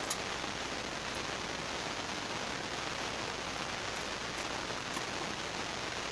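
Steady, even rain-like hiss, with a sharp click just after the start and a few faint ticks near the end.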